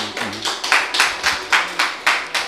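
A small audience applauding with many separate hand claps after a poem recital.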